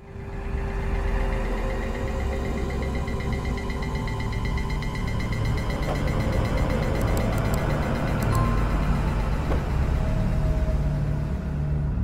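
Dark horror-film score: a sustained low rumbling drone with layered tones, swelling in over the first second and running steadily, then cutting off abruptly at the end.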